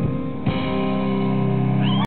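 Live piano and band music: a chord struck about half a second in and held, with a short rising note near the end.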